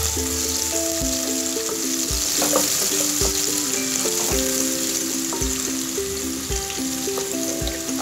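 Sliced onions sizzling in hot oil in a pot as they are stirred with a wooden spatula. Background music with a steady beat plays underneath.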